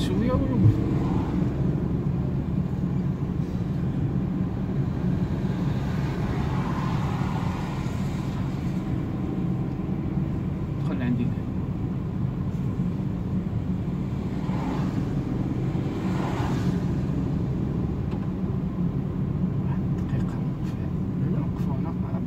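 A petrol car's engine and its tyres on a wet road, heard from inside the cabin: a steady low drone while driving slowly through town.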